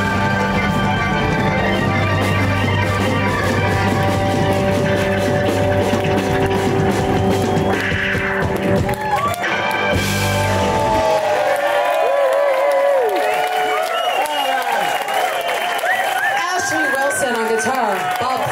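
Live blues-rock band (electric guitar, bass guitar and drums) holding a loud ringing closing chord, which cuts off with a final hit about ten to eleven seconds in. Then many voices cheer and whoop.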